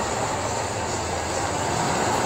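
Steady outdoor street ambience: an even rushing noise with a low hum underneath, no distinct events.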